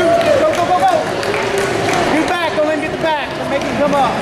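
Several voices shouting and talking at once over the steady hubbub of a crowd in a large hall, typical of coaches and spectators calling out during a grappling match.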